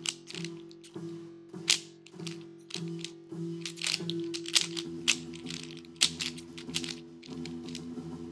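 Background music with sustained notes, over quick, irregular clicking typical of a 3x3 speed cube's layers being turned by hand.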